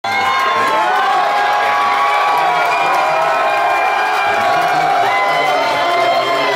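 Crowd of football fans in a packed bar cheering and yelling all at once, celebrating a win; loud and unbroken, with many voices overlapping.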